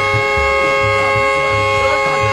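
A horn held in one long steady blast, over the pulsing bass beat of music.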